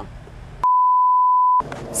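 A single steady 1 kHz beep lasting about a second, starting just over half a second in and set into fully muted audio: a dubbed-in censor bleep.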